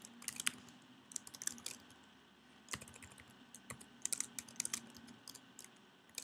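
Typing on a computer keyboard: quick, irregular key clicks, with a lull of about a second partway through.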